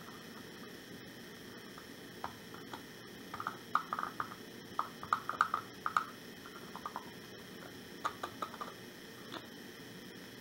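Paper cupcake liner crinkling and tapping against the rim of a small glass jar as glitter is shaken out into it: faint scattered crackles and ticks, thickest in the middle and again in a short cluster later.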